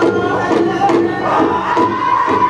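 Powwow drum group singing a contest song in unison, their voices high and held, over a large hand drum struck together in a steady beat about twice a second.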